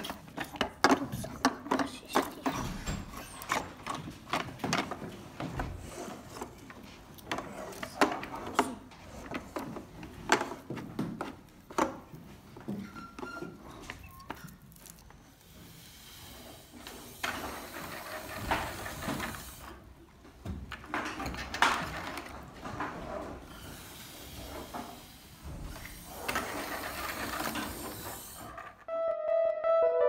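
Plastic bottles and parts clicking and knocking as they are handled on a wooden desk, with voices around. Later there are stretches of rushing, breathy noise as a balloon on a bottle car is blown up. Piano music starts at the very end.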